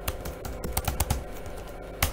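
Computer keyboard being typed: a quick run of key clicks as a short password is entered, stopping a little past halfway.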